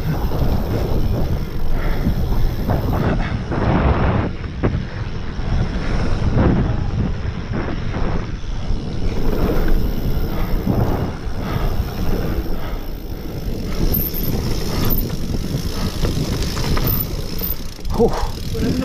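Mountain bike descending fast on a dirt trail: wind rumbling on the GoPro's microphone, with tyre noise and short rattles and knocks from the bike over bumps.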